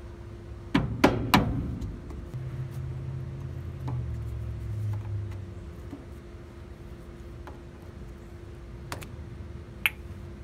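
A screwdriver prying the metal grease cap off a front wheel hub: three sharp metal clicks and knocks about a second in, a low rumble in the middle, and two more clicks near the end as the cap comes free. A steady low hum runs underneath.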